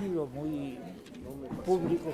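Indistinct voices of people talking among themselves in a room, too faint and mixed to make out words.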